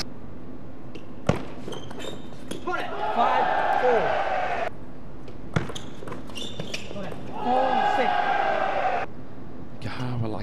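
Table tennis ball clicking off bats and the table during two rallies. Each rally is followed by a burst of crowd cheering and shouting, the first about three seconds in and the second about seven and a half seconds in.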